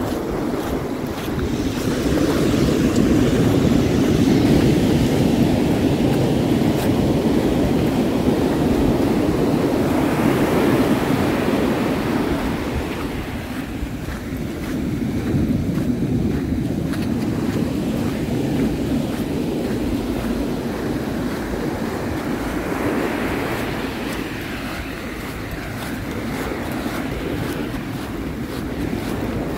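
Ocean surf breaking and washing up a pebbly sand beach, a steady wash that swells and ebbs every several seconds.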